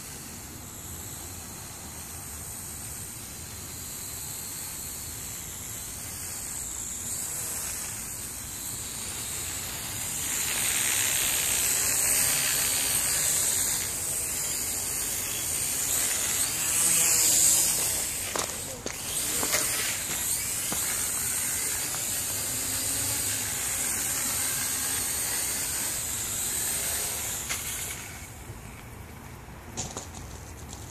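Ares Ethos QX 130 micro quadcopter's four electric motors and propellers, a high-pitched buzzing whine that grows louder as it flies in close, with one sharp click about two-thirds through. The whine drops away near the end as the quad comes down to land.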